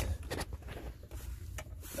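Rubbing and scraping handling noise with a few light clicks, as a hand and a hand-held camera brush against wiring and rubber hoses in a tight space.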